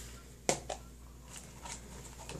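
A sharp click about half a second in and a softer one just after, then a few faint ticks: small plastic packaging being handled.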